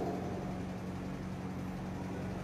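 A pause in an amplified speech: a steady low hum with a faint hiss, the room tone of the hall and its sound system.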